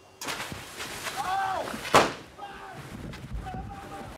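Special-effects blast on a film set: a sudden rush of noise, then a single sharp bang about two seconds in, with people shouting before and after it.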